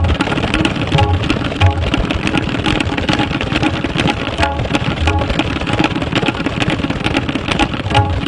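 Tabla played in a fast, dense run of strokes, with a few deep bass strokes from the bayan, the larger bass drum of the pair, near the start, about a second in and about five seconds in.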